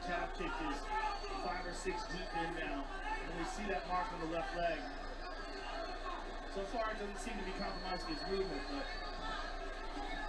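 Faint voices of a televised fight broadcast playing in the room: commentators talking at a steady low level, with a constant low hum underneath.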